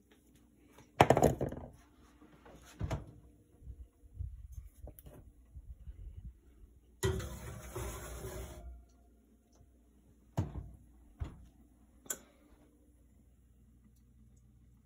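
Oven door and rack sounds as a metal tube pan goes into the oven. A loud clunk comes about a second in, a scraping metal rattle lasting about a second and a half follows a little past the middle, and three sharp knocks come near the end.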